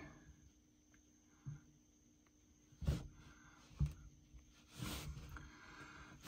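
Fingers tapping a tablet touchscreen: a few soft, separate taps spread over several seconds, against a faint steady hum.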